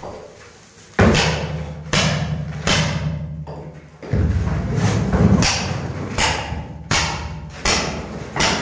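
Old floor covering being pried and knocked loose from a concrete floor with a hand tool: a series of sharp knocks, roughly one a second, with a longer rough scraping stretch around the middle.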